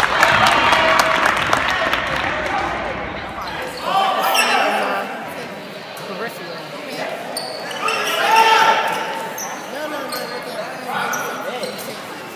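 Basketball game in a gymnasium: the ball bouncing on the hardwood court amid the calls and shouts of players and spectators, echoing in the hall. The voices are loudest in the first couple of seconds and again about eight seconds in.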